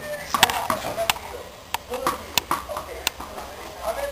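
Sharp, irregular clicks and taps as a Belgian Shepherd puppy's claws and its ball hit a hard tiled floor while it scrambles about playing.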